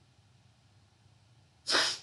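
A single short, sharp burst of breath from a person, close to the microphone, near the end; it sounds like a sneeze.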